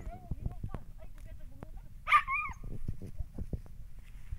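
A dog gives one short, high yelp about two seconds in. Around it come scattered scrapes and rustles of hands digging in soil and dry leaves.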